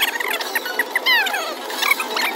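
Mo' Mummy slot machine's electronic bonus sound effects: a run of short, high, squeaky chirps and, about a second in, a falling swoop, as the free-spin bonus plays and its collected credits rise.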